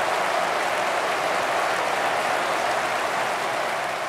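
Crowd applause, a steady even patter of many hands clapping.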